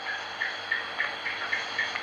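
A pause in a recorded talk: steady recording hiss with faint, short high ticks repeating evenly, about three a second.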